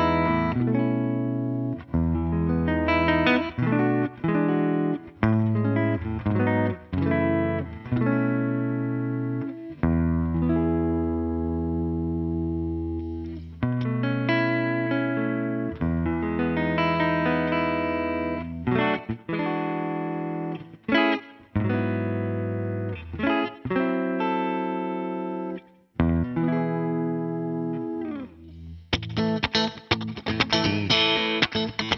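Music Man electric guitar played through an amp, its strings after four gigs of use: chords and notes left to ring for a second or more at a time, with short breaks between phrases. The playing turns to quicker, brighter picking near the end.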